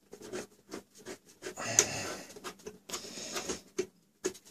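Hands working the aluminium top plate of a PC case: a run of small clicks, taps and scraping of metal, busiest in the middle.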